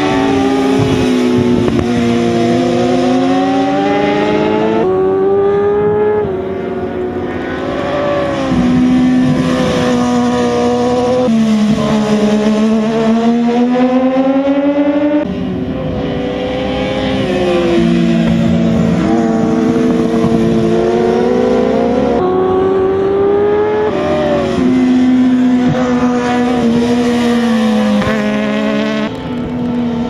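Racing sportbike engines at high revs, pitch climbing as they accelerate and dropping as they shut off for the corners, over and over. The pitch jumps abruptly several times as the sound passes from one bike to another.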